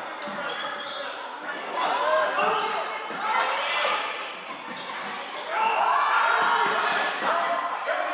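Live indoor floorball play in a large hall: players' calls through the rally, with scattered clicks of sticks and the plastic ball on the court.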